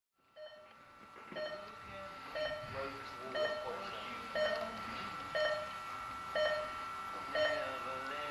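Electronic beeps from an RC race timing system, eight in a row about once a second, counting down to the start of the race, over a steady high-pitched tone.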